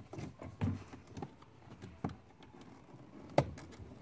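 Plastic wiring-harness clips and connectors on a car door panel being worked loose by hand: faint rustling and a few small clicks, with one sharp click about three and a half seconds in.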